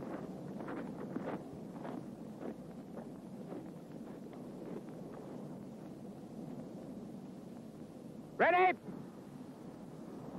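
Faint shuffling and light knocks of soldiers getting down into prone firing positions with rifles, then one loud shouted word of command about eight and a half seconds in.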